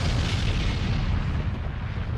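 Sound effect of a volcanic fissure eruption: a steady deep rumble with a hiss above it.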